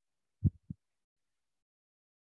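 Two short low thumps about a quarter second apart, the first louder than the second.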